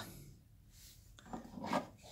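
Plastic toy robot figure being handled: a few short rubbing and scraping sounds of plastic in the second half.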